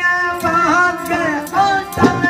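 A high-pitched male voice singing a Sindhi folk song with melismatic, gliding phrases over harmonium notes held steady underneath. A dholak hand drum adds a few light strokes.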